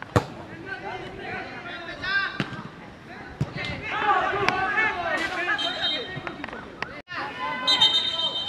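A football struck hard at a free kick just after the start, a single sharp thud, followed by players and spectators shouting across the pitch. A few lighter knocks from the ball come through the shouting, and the sound cuts off abruptly about seven seconds in at an edit.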